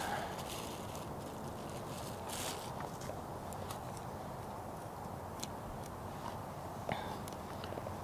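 Quiet handling sounds over a steady hiss: a few light taps and rustles as bean sprouts are pushed from a plastic bag into a small metal pot and stirred with wooden chopsticks.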